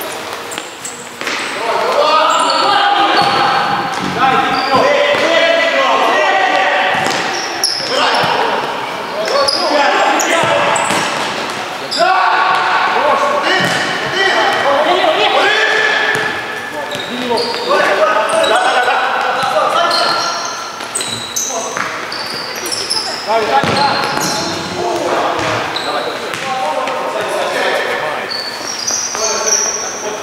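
Futsal players shouting to one another during play, with the ball being kicked and bouncing on the hall floor.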